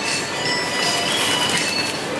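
Shopping cart wheels rolling on a hard floor, rattling with thin high squeaks.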